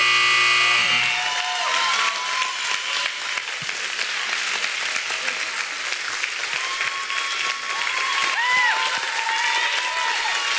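A countdown buzzer sounds a steady electronic tone for about the first second as the timer runs out. Audience applause follows, with a few whooping cheers.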